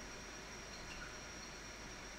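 Faint steady background hiss with a thin, high-pitched whine running through it: room tone, with no distinct sound.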